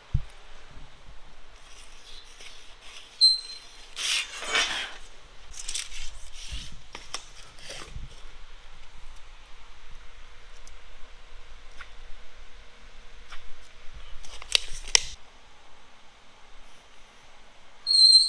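Soapstone scratching marks onto a steel plate in a few short strokes. A short high squeak sounds just after three seconds and again at the very end.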